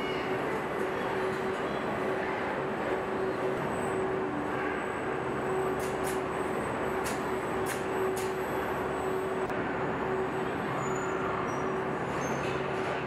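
Vehicle assembly plant floor with robotic welding and body-handling cells running: a steady machinery noise with a constant hum, broken by a few short, sharp hissing bursts about halfway through.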